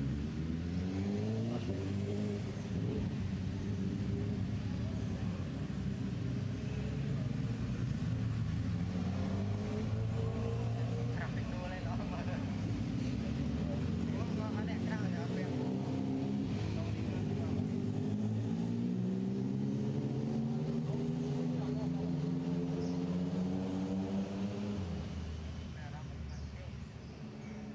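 Motor vehicle engines running, their pitch rising several times as they rev and accelerate.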